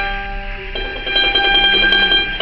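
Acoustic guitar played alone without singing: a chord is strummed and left to ring, and a new chord is struck under a second in.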